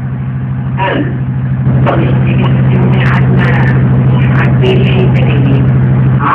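A steady low machine hum, like a motor running, that grows louder about two seconds in.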